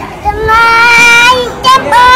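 A small child's high voice chanting a Buddhist prayer, drawing out one long held note for about a second, then starting a second note near the end.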